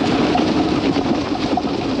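29er wheels of a rigid titanium gravel bike rolling fast downhill over a wet, rough gravel track: a steady rushing noise of tyres on loose stone, mixed with air rushing past.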